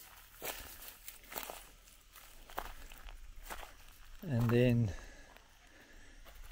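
Footsteps on dry grass and twigs, a few irregular steps. About four seconds in, a man's voice sounds briefly.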